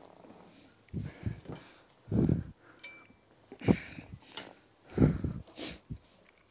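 A man's strained grunts and heavy breaths, in about six short bursts, as he exerts himself lifting heavy matting.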